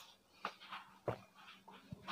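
A few faint, short gulping sounds of a man drinking from a small plastic bottle, about three in two seconds.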